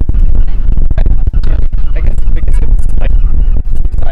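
Strong wind buffeting the camera's microphone: a loud, continuous low rumble with irregular crackles.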